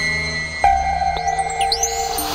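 1978 Serge Paperface modular synthesizer played from its TKB touch keyboard, with reverb. It holds electronic tones that jump to new pitches about two-thirds of a second in and again at about a second, while curved, sweeping whistles rise and fall high above them in the middle.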